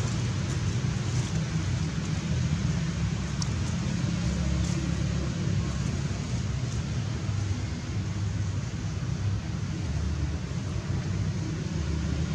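Steady low rumble of outdoor background noise, with no distinct event apart from a couple of faint ticks near the middle.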